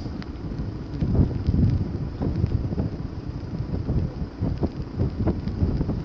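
Wind buffeting a phone's microphone in uneven gusts, a low rumbling noise that rises and falls.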